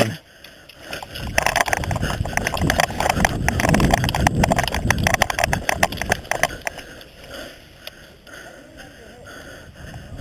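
Running footfalls on grass with loose gear and an airsoft rifle rattling. The sound is irregular and busiest from about one second in, then eases off after about seven seconds.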